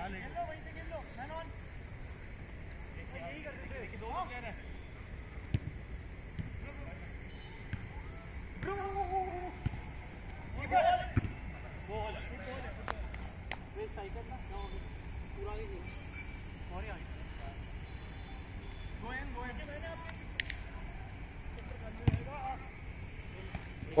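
Footballers' scattered shouts and calls during a game, with sharp knocks of the ball being kicked several times, over a steady low background hiss.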